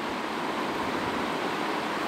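Steady, even background hiss, with no other sound in the pause.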